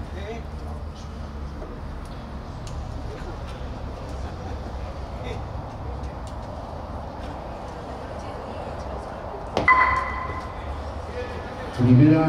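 Low murmur of spectators in a covered bolo palma alley. About ten seconds in comes a single sharp knock with a short ringing tail, the sound of a thrown bolo ball striking.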